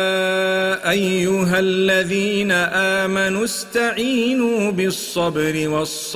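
A solo male voice chanting melodically in Arabic, holding long notes with wavering ornaments and breaking off briefly a few times.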